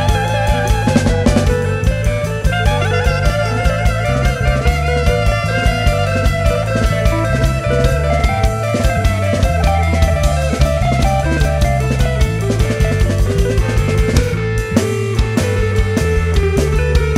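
Improvised band music: electric guitar and drum kit over a stepping bass line, with a wavering lead melody line in the middle register.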